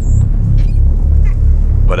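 Background music: a pulsing deep bass beat, about two pulses a second, under a low rumble. The narrator's voice comes in right at the end.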